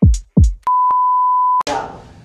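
Two deep kick-drum hits from a drum-machine beat, then a steady, single-pitch bleep of the kind used to censor. It lasts about a second and cuts off abruptly, leaving a faint room hush.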